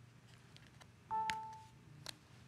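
Amazon Fire 7 tablet's Alexa chime: a short electronic tone about a second in, sounding from the tablet's speaker in answer to a spoken voice command, with a faint click at the same moment.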